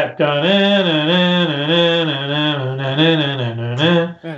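A man vocally imitating a guitar riff: one unbroken wordless sung line in a low voice, its pitch dipping and rising over and over for about three and a half seconds.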